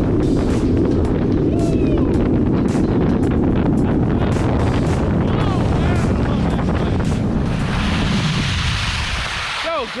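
Wind buffeting an action camera's microphone at skiing speed, mixed with skis running and carving on wet snow. Near the end the noise turns brighter and hissing as the skis skid to a stop, then dies away.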